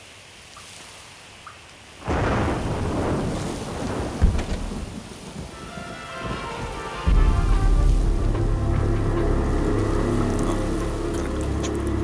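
A sudden thunderclap about two seconds in that rumbles away, with a sharp crack near four seconds. From about seven seconds a deep low rumble sets in under steady droning tones, like a dark film score.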